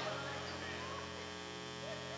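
A steady hum of several held tones, with faint voices in the room behind it.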